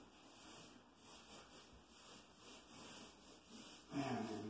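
Faint rubbing of a paintbrush stroking paint onto a wall, coming in soft swells.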